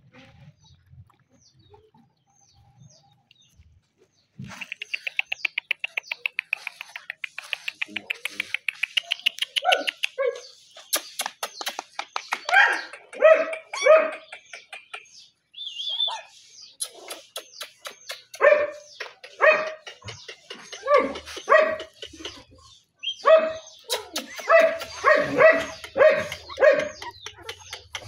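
Young puppies yelping and whining in short, high, repeated cries that come in clusters through the second half. Before them comes a fast, high, chirping trill.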